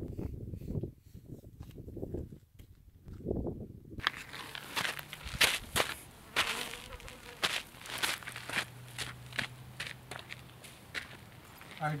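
Footsteps and shuffling on gritty desert ground: a series of short, sharp crunches and scrapes. An insect buzzes steadily for about two seconds near the middle. The first few seconds hold only a low, gusty rumble.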